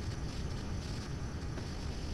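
Steady low background noise with a faint hum and no distinct events: the recording's room tone in a pause between words.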